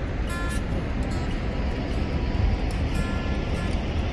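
Wind buffeting the microphone: a steady, deep rumbling roar that rises and falls. Faint music with a few held notes sounds underneath.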